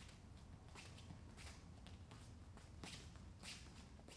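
Faint, soft swishes and scuffs of bare feet shuffling on foam training mats, about five of them spread over the few seconds, above a low steady room hum.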